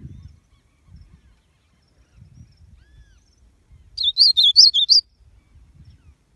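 A caged papa-capim (Sporophila seedeater) sings one short phrase of about half a dozen quick, high notes that rise and fall, lasting about a second and starting some four seconds in.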